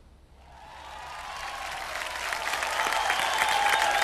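Studio audience applause: many hands clapping, fading in about half a second in and swelling steadily to full loudness.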